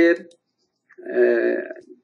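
A man's voice holding one drawn-out vowel-like sound for about a second, a hesitation filler between phrases, after the last syllable of a spoken word at the very start.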